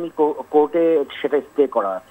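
Speech only: a caller talking over a telephone line, the voice thin and narrow as phone audio is.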